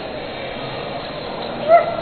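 A single short, high dog-like yip near the end, over a steady background hubbub.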